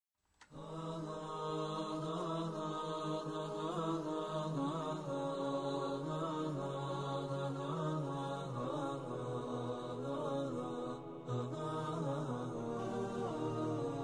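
Vocal chanting in long held notes that slide slowly in pitch, with no drum or beat, starting about half a second in.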